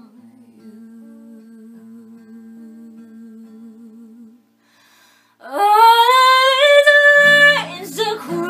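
A woman hums one long, quiet note with a slow vibrato. After a short pause she sings out a loud note that scoops upward in pitch and is held. Acoustic guitar strumming comes back in near the end.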